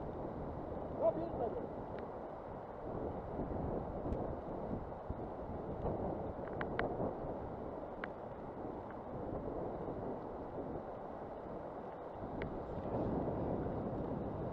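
Steady rush of a fast-flowing river with wind buffeting the microphone, broken by a few faint, sharp clicks.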